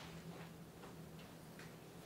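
Faint scratching of pens on paper, a few short strokes close together, over a steady low room hum.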